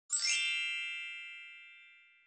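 A single bright chime struck once, ringing with several high tones that fade away over about two seconds: a logo-reveal sound effect.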